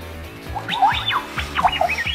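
Background music, joined about half a second in by a quick string of high electronic chirps that sweep up and down in pitch: the Mazzy toy robot's sound effects.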